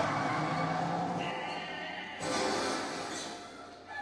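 Movie soundtrack: a truck's tires screech as it pulls away, with music underneath, then a second swell about two seconds in that fades out.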